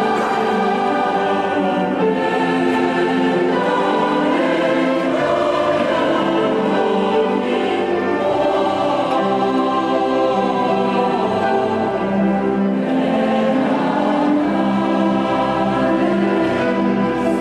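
Christmas music sung by a choir in long, held notes, with steady loudness throughout.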